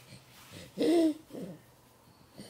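A baby's short, loud hooting vocal sound about a second in, followed by a shorter, softer one.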